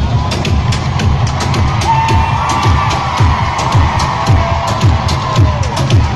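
Loud live concert music over the arena sound system, driven by a steady bass-drum beat, with a held melodic line coming in about two seconds in and falling away near the end.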